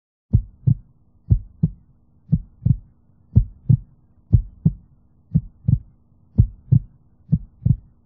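Heartbeat sound effect: low double thumps in a lub-dub pattern about once a second, eight beats in all, over a faint steady hum.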